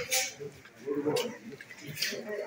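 Indistinct voices of people talking in the room, with short papery rustles about the start and a little over a second in.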